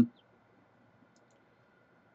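Near silence with a faint steady high hum, broken by a couple of faint computer mouse clicks.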